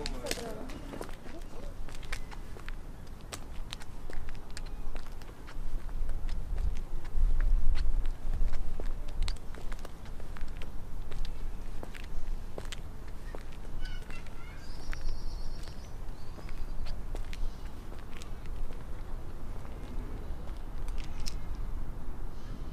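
Open-air park ambience: wind rumbling on the microphone, strongest a few seconds in, with footsteps on a path and a short bird call about fourteen seconds in.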